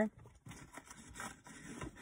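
Faint rubbing and handling noise as a pack of small plastic key tags is handled in the hands, with a few soft scrapes.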